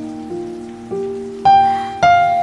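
Slow, soft piano background music: a few single notes climbing in pitch, each left to ring and fade, the loudest struck about one and a half seconds in.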